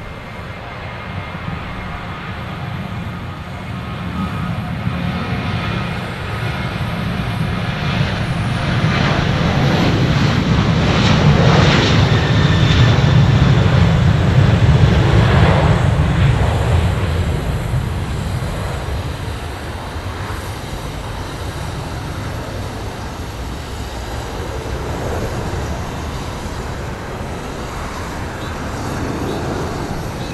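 Boeing 737-700's twin CFM56-7B turbofan engines at takeoff thrust, a low rumble with a rushing hiss that grows as the jet rolls down the runway. It is loudest about 11 to 16 seconds in as it passes and lifts off, then eases to a steadier, lower rumble as it climbs away.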